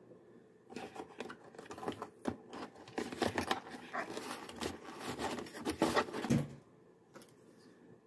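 Unboxing noise: hands lifting the plastic parts of a Lucy drawing tool out of the foam insert of its cardboard box, a busy run of scrapes, rustles and light clicks and knocks that dies away about six and a half seconds in.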